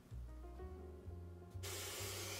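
Background music with a low stepping bass line. About a second and a half in, water from a kitchen tap starts running into a stainless steel saucepan with a steady hiss.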